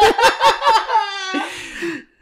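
Two men laughing heartily: quick ha-ha pulses, then a higher drawn-out laugh about a second in that trails off.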